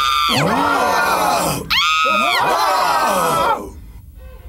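A woman's voice screaming in fright: two long screams, the second starting about halfway through. Each starts high and falls in pitch, and the screaming stops shortly before the end.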